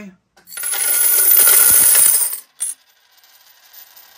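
A heap of metal coins pouring and jingling for about two seconds, then a single clink and a faint fading ring.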